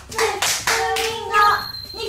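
Several quick hand claps in the first half, followed by a woman's voice calling out.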